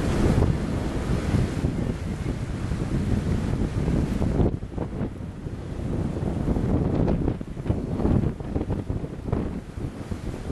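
Wind buffeting the microphone of a camera on a moving boat, with the rush of water underneath. The gusts come and go unevenly, and the hiss eases somewhat about halfway through.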